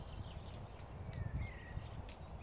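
Low, uneven rumble of wind on the microphone, with a faint thin bird whistle about a second in.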